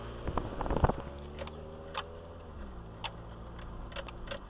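Car engine running at low speed, heard from inside the moving car, its pitch dropping slightly past the middle. Gusts of wind hit the microphone in the first second, and a few sharp ticks come about a second apart.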